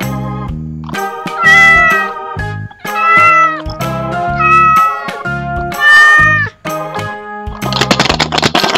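A cat meowing four times, each meow long and loud, about a second and a half apart, over background music.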